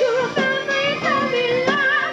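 Rock band playing, with a lead singer's voice carrying a wavering melody over the instruments.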